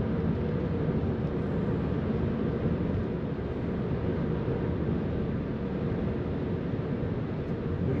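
Steady in-cabin road and drivetrain noise of a 2009 Pontiac G6 GXP cruising at about 55 mph, its 3.6-litre V6 turning about 1500 rpm.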